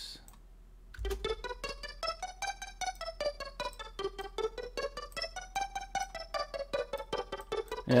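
Arpeggiated synth pluck patch from Native Instruments Massive, running through Massive's tempo-synced delay. From about a second in it plays a fast, even run of short notes that climb and fall in pitch.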